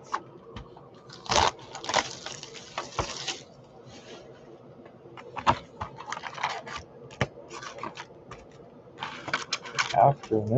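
Trading-card hobby box being opened and its foil packs handled: bursts of tearing and scraping of cardboard and wrapping, loudest in the first few seconds, with scattered clicks and rustling.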